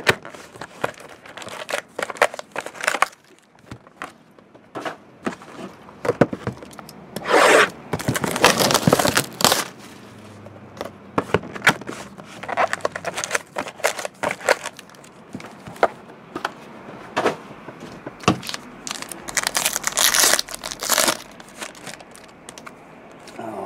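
Hands opening a box of 2012 Panini Certified football cards and its foil packs: irregular crinkling, rustling and handling clicks, with loud tearing rips about a third of the way in and again near the end.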